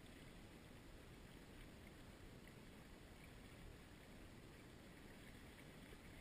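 Near silence: a faint, steady rush of flowing river water.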